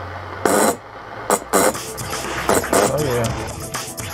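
A homemade spark gap transmitter being fired: a short burst of crackling noise about half a second in, then two sharp snaps just after a second. Music comes in from about halfway through.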